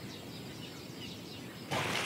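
Quiet outdoor ambience with a few faint bird chirps. Near the end a louder rush of noise comes in.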